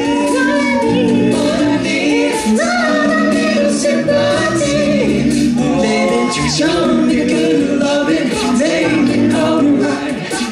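Male a cappella group singing live through microphones: sustained harmonies under arching melody lines that no one sings as clear words. Vocal percussion keeps a steady beat.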